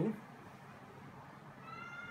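Whiteboard marker squeaking on the board as a box is drawn: one high squeak with overtones, lasting under a second, near the end.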